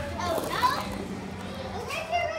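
Children's voices: excited high-pitched calls and squeals, one burst about half a second in and another near the end, over a low steady hum.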